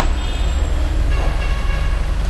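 A steady low rumbling hum with faint high whines over it: the constant background noise under the narration recording, with no speech.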